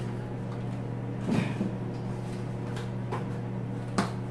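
Refrigerator door being opened: a soft knock and a few light clicks, then a sharper click near the end, over a steady low hum.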